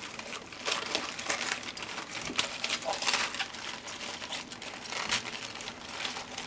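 Napa cabbage leaves being pulled apart and broken off the head by hand: an irregular run of crisp crunching and crackling.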